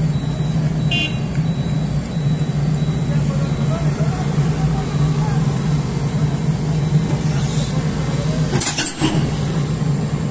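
JCB tracked excavator's diesel engine running steadily with a low hum, with a short metallic clank near the end.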